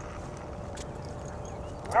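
A horse walking on soft arena dirt: faint, irregular hoof steps over a steady low background rumble.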